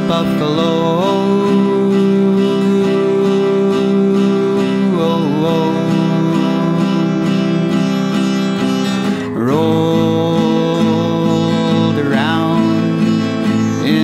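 Instrumental music from acoustic guitar, with long held notes that slide from one pitch to the next, including a sharp upward slide about nine seconds in.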